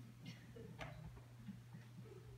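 Near silence: room tone with a steady low hum and two faint clicks about half a second apart.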